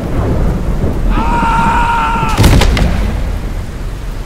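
Heavy rain with low rumbling thunder. About a second in, a steady high pitched tone sounds for roughly a second, then a sharp crack of thunder hits about two and a half seconds in.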